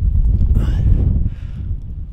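Wind buffeting a handheld action camera's microphone, a low uneven rumble that eases a little past halfway.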